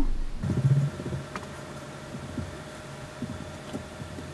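Quiet room tone: a faint steady hum with a brief low rumble near the start and a few soft rustles and light ticks.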